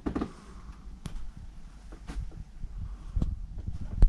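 Low rumble of a handheld camera being carried through a small shop, with faint knocks about a second apart.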